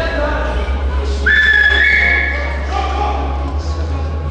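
A spectator's loud whistle, about a second and a half long, that slides up and then jumps to a higher note, over the voices of the crowd in the hall. It is the kind of whistle given to cheer competitors on stage.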